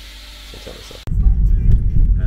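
Quiet room tone that cuts off suddenly about a second in, replaced by the steady low rumble of a moving car heard from inside the cabin, with music playing over it.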